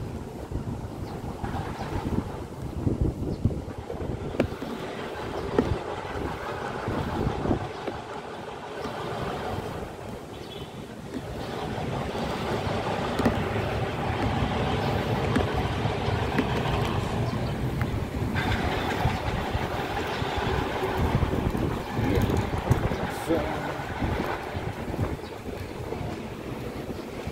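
Outdoor city noise, with wind on the microphone, traffic and indistinct voices. Scattered knocks from the camera being handled come through in the first half.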